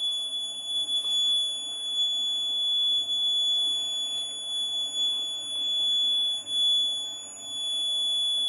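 Electronic buzzer alarm on a Raspberry Pi Pico accident-detection board, sounding one steady high-pitched tone: the alert for a detected accident (a right-side tilt of the accelerometer).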